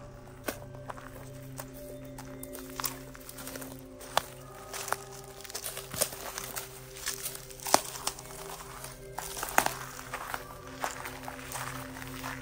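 Footsteps on dry leaves, twigs and dry grass: a run of irregular sharp crackles and snaps as people walk. Steady background music plays underneath.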